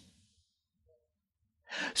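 Near silence, then a man's short in-breath near the end as his speech resumes.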